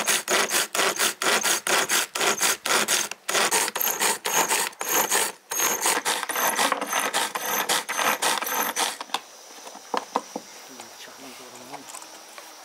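Manual pull-cord food chopper chopping fresh herbs: quick repeated pulls, about three a second, each a rattling whirr of the spinning blades and the ratcheting cord. There are two short breaks, and the pulling stops about nine seconds in, followed by a few light clicks.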